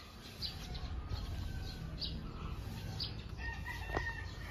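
Quiet yard ambience: small birds chirping in short high notes about once a second, and a chicken calling with a long held note near the end, over a faint low rumble.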